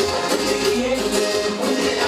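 Live band playing Latin dance music, a cumbia, through a club PA system. This is an instrumental passage with no vocal line.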